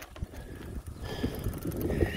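Wind buffeting the microphone over the low rumble of bicycle tyres rolling on an asphalt path, with a faint high whine that comes and goes.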